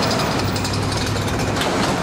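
Steady rumble and hiss of vehicle noise, like road or rail traffic, with a low hum running under it.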